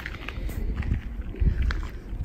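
Low rumble of wind on the microphone with faint crunches of footsteps on gravel.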